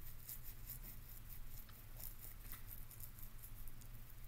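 Faint, scattered computer mouse clicks over a low steady hum of room tone.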